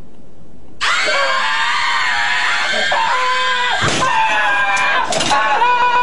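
A person screaming in fright at the jumpscare of a scary maze game: a sudden, loud, high-pitched scream starts about a second in and goes on in long wavering cries with short breaks.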